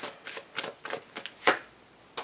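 A deck of tarot cards being shuffled by hand before a card is drawn: a quick, uneven run of soft card snaps, the loudest about one and a half seconds in, then a brief pause.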